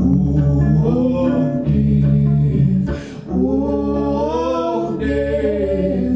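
Live folk music: long, held singing with no clear words, voices in harmony, over a guitar played flat on the lap.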